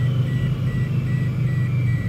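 A steady low hum, typical of a car engine idling, with a high electronic beep repeating about two and a half times a second over it.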